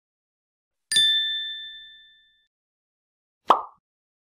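Logo-animation sound effects: a bright, bell-like ding about a second in that rings out and fades over about a second, followed near the end by a short, soft puff of noise.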